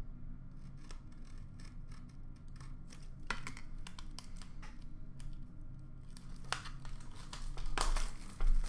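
A blade scratching along the sealed edge of a cardboard card case, slitting it open in a series of short scraping strokes, several sharper ones from about three seconds in. A steady low hum runs underneath.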